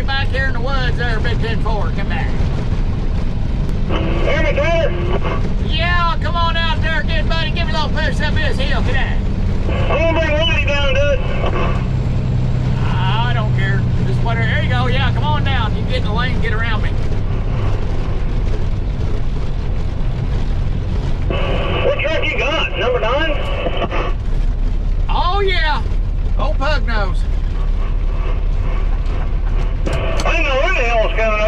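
Truck engine rumbling steadily, heard inside the cab, under a CB radio conversation: a man talking into the handheld mic, with replies coming back thin and narrow over the radio speaker.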